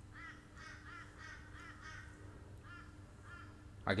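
Faint bird calls, a run of short repeated calls a few tenths of a second apart, over a low steady hum.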